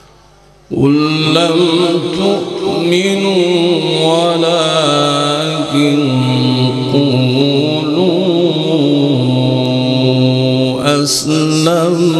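A man's voice in melodic Quran recitation (tilawat), coming in loudly about a second in after a brief lull. The notes are long, held and ornamented with wavering turns.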